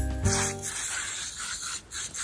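Background music ends with a last held chord under a second in, then a garden hose spray nozzle hisses unevenly as it showers water onto pansies in a window box.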